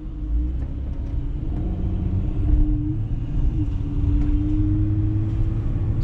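Van engine and road rumble heard from inside the cab while driving slowly, the engine hum dropping in pitch about three and a half seconds in and then rising slowly.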